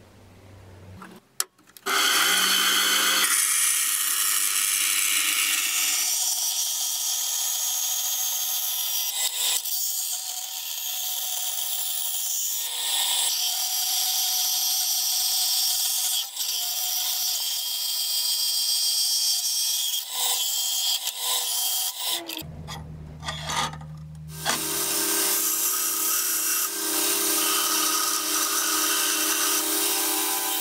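A small thin-bladed power saw starts about two seconds in and runs steadily, cutting, for about twenty seconds. After a brief break with a low hum, a belt grinder runs with a steady tone from about 25 seconds in, grinding a steel knife blade held against the belt.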